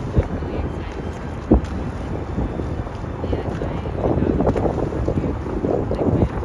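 Wind buffeting the microphone on a sailing boat's open deck: a steady low rumble, with two short thumps in the first couple of seconds. Muffled voices come in from about four seconds in.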